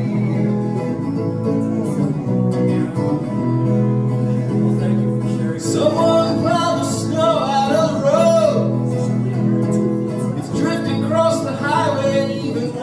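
Live acoustic song: a strummed acoustic guitar holds steady chords. About six seconds in, a wavering melody line comes in over it, and it returns briefly near the end.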